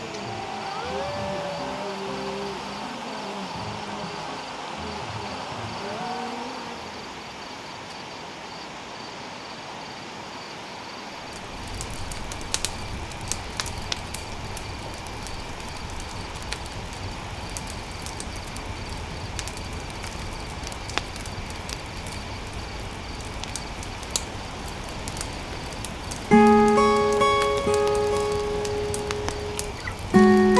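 Steady rain with many drops tapping on a surface, starting abruptly about a third of the way in after some rising and falling calls. Near the end, loud music notes come in over the rain.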